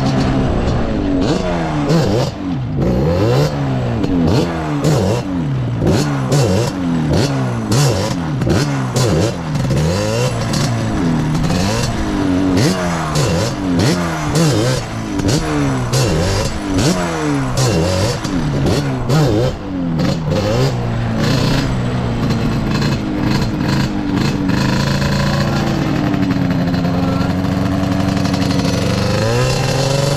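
Yamaha Banshee 350's twin-cylinder two-stroke engine revving up and down about once a second under the rider's throttle, then holding a steady note for a few seconds before climbing again near the end.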